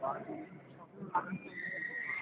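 Patterdale terrier whining: one thin, high, drawn-out whine that starts about one and a half seconds in and is still going at the end.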